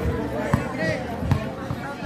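A basketball bounced twice on the court, less than a second apart, over crowd voices and chatter.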